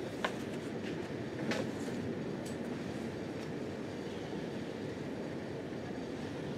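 Paperback book handled and its pages turned, with two short crisp paper sounds about a quarter second and a second and a half in, over a steady low room rumble.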